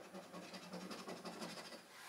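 A coin scratching the coating off a scratchcard's prize box, in faint, rapid short strokes.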